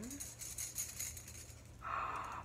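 Metal drinking straws jingling and clinking together inside a drawstring bag as it is pulled open and handled, with a light rustle of the bag. Near the end there is a short breathy gasp.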